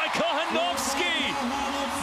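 Excited voices shouting over arena crowd noise as a volleyball point is won, with one long held call in the second half.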